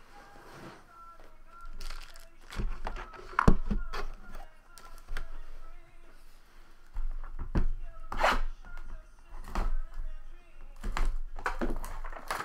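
Scattered knocks and light rustling of things being handled on a tabletop, the sharpest knock about three and a half seconds in, over faint background voices or music.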